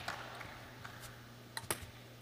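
A few faint sharp clicks of a table tennis ball striking bat and table, then a louder click about three-quarters of the way through, over a low steady hum.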